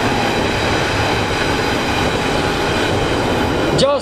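A steady, loud rushing noise with faint held tones in it, even throughout and stopping just before speech resumes.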